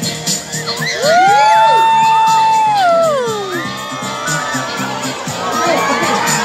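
A crowd of children shrieking and cheering together: a loud shared shout swells about a second in, holds for about two seconds, falls away, and rises again near the end. Background music with a steady beat plays underneath.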